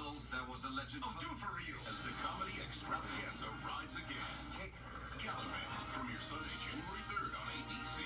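A television playing in the room: indistinct speech over music.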